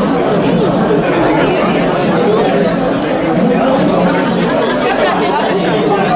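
Several people talking at once: an indistinct babble of overlapping conversation.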